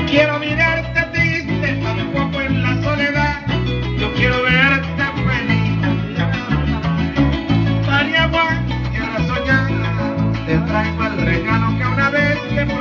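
Venezuelan llanera (joropo) music led by a llanera harp, with bright ornamented runs over a steady plucked bass line.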